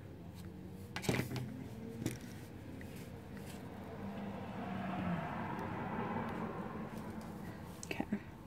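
Hands handling a crocheted yarn motif and plastic crochet hook: two small clicks about a second and two seconds in, then a soft rustle of yarn that swells and fades in the second half.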